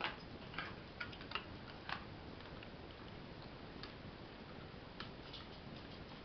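A dog's claws clicking faintly and irregularly on a hardwood floor: a handful of light ticks, most of them in the first two seconds.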